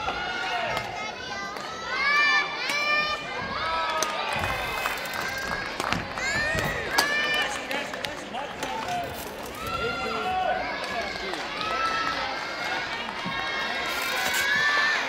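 Many children's voices shouting and cheering at once, overlapping in a gymnasium, with a few sharp clicks near the middle.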